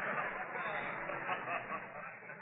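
Studio audience laughter dying away, with faint murmured voices under it, heard through the narrow, muffled sound of an old radio transcription.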